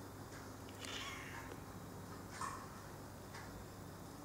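Domestic cat meowing twice: once about a second in and again, louder and shorter, a little past the halfway mark.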